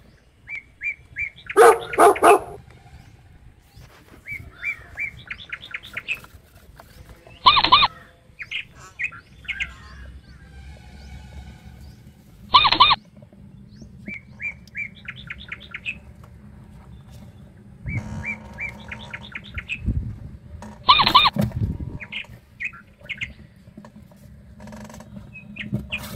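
Small-animal chirping: repeated short trains of rapid high chirps, broken by a louder pitched call four times, about every five seconds.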